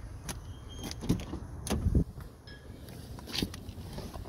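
The 2015 MINI Cooper's driver door being opened: a few sharp clicks from the door handle and latch, then the door swinging open, with handling knocks.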